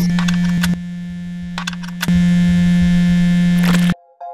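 Electronic intro sound effect: a loud, steady low buzz under a wash of noise, with glitchy clicks. It drops back about a second in, returns louder around two seconds in, and cuts off suddenly just before the end.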